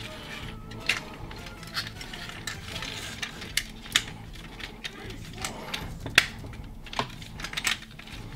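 Irregular sharp clicks and taps of hard plastic as a 1996 Kenner Beast Wars Megatron action figure's parts are handled and its hip flap pieces clipped into place.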